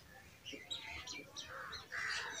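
Marker squeaking on a whiteboard in a run of short, faint, high strokes as numbers are written.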